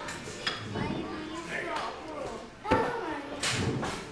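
Voices talking indistinctly, with a single sharp knock about two-thirds of the way through.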